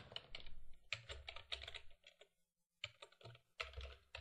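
Typing on a computer keyboard: quick runs of key clicks, with a short pause a little after the middle.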